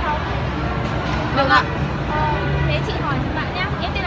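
Girls' voices talking briefly and indistinctly over a steady low background rumble outdoors.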